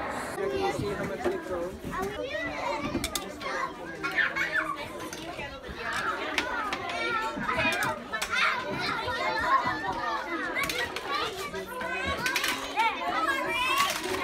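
A crowd of young children talking and calling out at once, many overlapping voices with some high-pitched shouts, and a few brief knocks among them.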